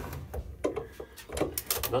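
Light clicks and knocks of hands handling a chipboard mould box and its metal F-clamp, with a quick run of clicks near the end.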